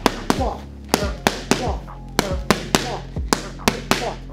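Boxing gloves smacking into focus mitts in quick three-punch combinations (uppercut, hook, cross): about a dozen sharp slaps in rapid groups of three, over background music.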